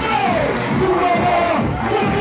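Loud club dance music with a man shouting into a microphone over it, two drawn-out calls falling in pitch, and a crowd in the background.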